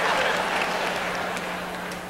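Audience applause, a dense patter of many hands, slowly dying down.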